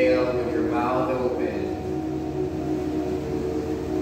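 A group of voices doing a vocal warm-up: they glide up in pitch about half a second in, then hold a steady sustained tone.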